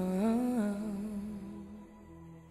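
Soundtrack music: a wordless hummed voice holding and sliding between a few low notes, fading out near the end.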